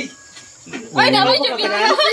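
Faint crickets chirping in a brief lull, then people's voices start loudly about a second in.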